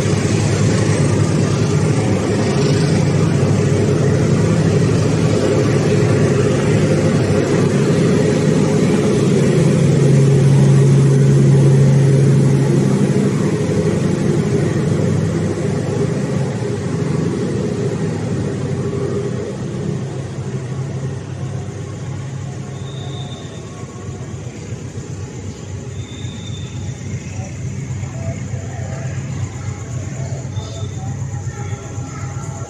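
Diesel-hauled passenger train pulling out of a station: a steady low engine rumble, loudest about ten to thirteen seconds in, then fading as the train moves away.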